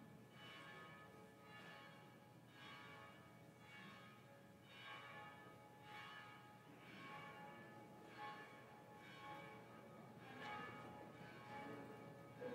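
Church bells ringing faintly, a stroke about every second, each with many overlapping tones that ring on and die away.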